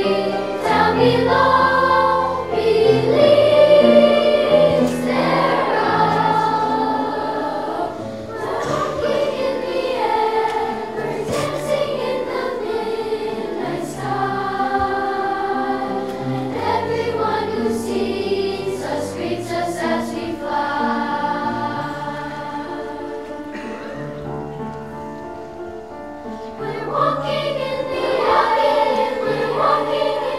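A children's choir singing in unison and parts, accompanied by piano. The singing eases to a softer passage about three-quarters of the way through, then swells again near the end.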